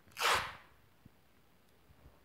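Crepe masking tape ripped off the roll in one short, quick pull, a little after the start, followed by a faint tick.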